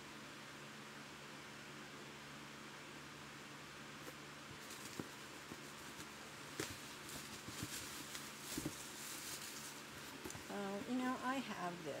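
Faint steady room hum, then from about four seconds in scattered light rustles and small knocks of packaging being handled as a box of Funko Pop figures is unpacked.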